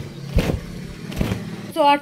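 A cloth bedsheet being shaken out by hand, snapping in sharp flaps, two of them about a second apart.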